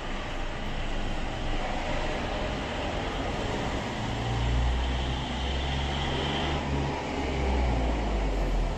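A steady low rumble with a hiss over it, like road traffic, swelling in the second half.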